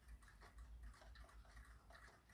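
Near silence: faint room tone with a few light ticks.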